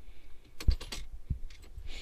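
A few sharp clicks with a light jingle of the key ring as the ignition key is handled and turned in the panel's key switch. The loudest click comes a little after halfway, with smaller ones following.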